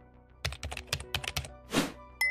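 Computer keyboard typing sound effect: a quick run of key clicks lasting about a second, followed by a short swish near the end, over faint background music.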